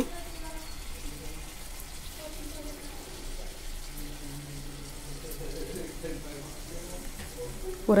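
Lemon juice poured in a thin stream from a steel bowl, strained through the fingers, into a pot of cooked meat: a faint, steady trickle of liquid.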